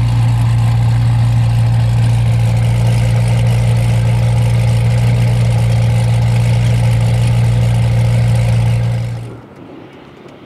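Two V8 sports cars idling side by side: a McLaren 720S and a built, supercharged Corvette C7 Z06. A steady low hum that cuts off sharply about nine seconds in.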